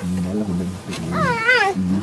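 A leopard cub mewing: one short call a little over a second in, its pitch wavering up and down.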